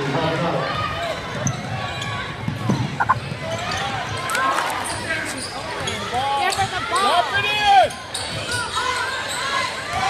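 A basketball being dribbled on a hardwood gym floor, with sharp bounces, under a constant mix of crowd and player voices calling out.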